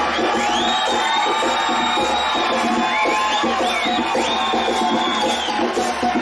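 Samba percussion: surdo bass drums struck with mallets in a quick, steady rhythm, with a crowd cheering and several long, high whoops over it.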